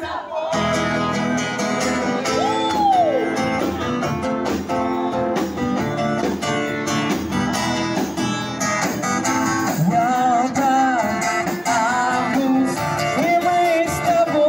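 A live street band playing a song: guitar over a steady drum beat, with a voice singing the melody.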